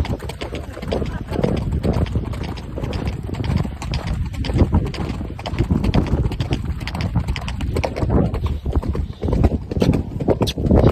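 Hooves of a ridden horse striking a dirt trail at a fast gait, a quick, uneven run of thuds over a low rumble.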